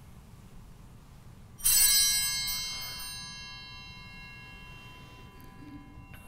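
Altar (sanctus) bell rung once, a bright ringing that starts about one and a half seconds in and dies away over a few seconds, marking the elevation of the chalice at the consecration.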